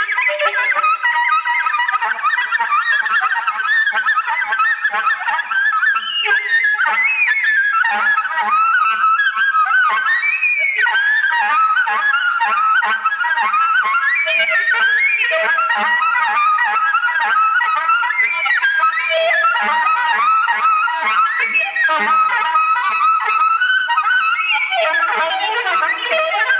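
Solo soprano saxophone in free improvisation: a dense, unbroken stream of rapid, overlapping notes in the instrument's middle and upper range, running on without any pause for breath.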